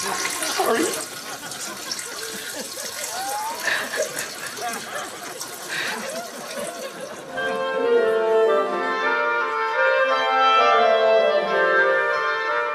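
Water trickling, with a few faint vocal noises. About seven and a half seconds in, an orchestra begins playing sustained chords, louder than what came before.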